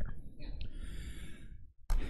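A man's soft breath, a sigh-like exhale or intake lasting about a second, in a pause between sentences, over low room rumble.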